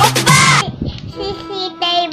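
A dance track with a heavy bass beat cuts off at the very start. A child's voice then sings over quieter, light music.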